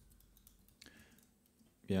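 A near-quiet pause on a video call with a few faint clicks in the first second, then a man says "yeah" near the end.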